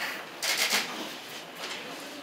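A short, soft rustling noise about half a second in, then a fainter one about a second later.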